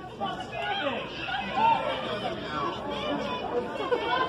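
Crowd chatter: several spectators talking and calling out at once, voices overlapping.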